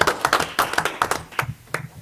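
A small group clapping by hand, many irregular claps that thin out to a few stragglers about a second and a half in.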